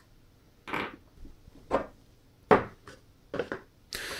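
Handling noise from a compact flashlight and its 18650 extension tube being picked up and set down on a wooden tabletop: about five short knocks and clacks, the loudest a little past halfway.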